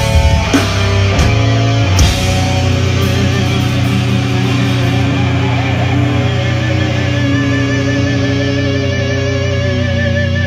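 Live heavy rock band playing loudly: a few hard accented hits in the first two seconds, then held electric guitar notes with vibrato over a steady low drone.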